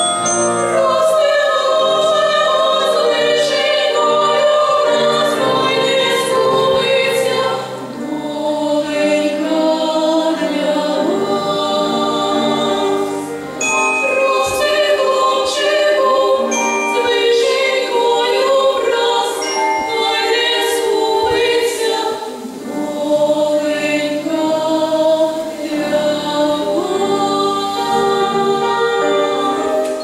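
Girls' vocal ensemble singing a Ukrainian lullaby, several voices together through stage microphones, with three short breaks between phrases.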